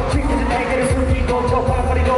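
Live hip-hop music played loud through a concert PA: a heavy thudding bass beat under sustained melodic tones, with a rapped line at the start.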